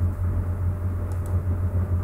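Steady low hum, with two faint mouse clicks a little after one second.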